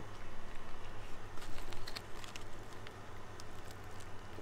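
Soft crinkling of a foil-lined fast-food burger wrapper and the quiet sounds of eating, with a few faint ticks over a steady low hum.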